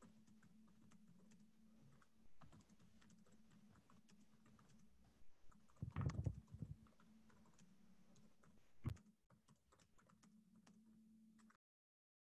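Faint computer keyboard typing, scattered clicks of keys over a low steady hum, with a louder bump about six seconds in. The sound cuts off suddenly to dead silence near the end.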